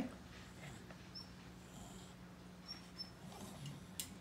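A dog whining softly: a few faint, short, high squeaks over a quiet room with a steady low hum.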